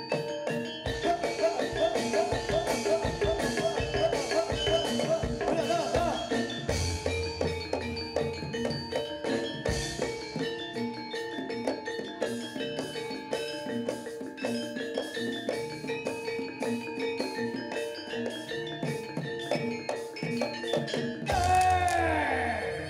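Live Javanese gamelan music for a jaranan horse dance: rapid, even drum strokes and ringing metal percussion over a steady held note, with a louder swell near the end.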